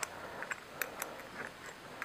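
A few faint metal clicks from a small wrench turning the lock nut on a bow release's wrist-strap post as the nut is tightened.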